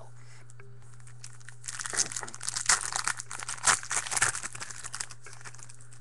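A trading-card pack wrapper being torn open and crinkled in the hands: a dense run of crinkling and tearing starts about two seconds in and lasts some three seconds.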